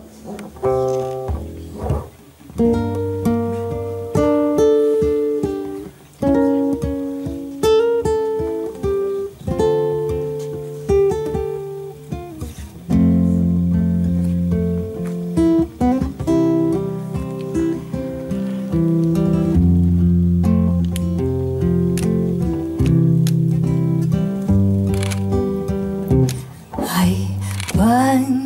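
Two acoustic guitars, one of them an acoustic bass guitar, playing an instrumental introduction of picked notes, with a low bass line coming in about halfway through. A singer's voice starts right at the end.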